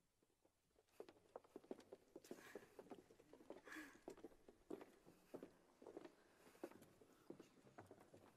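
Faint, irregular footsteps and small knocks on a stage floor, starting about a second in, as people walk about and take their places.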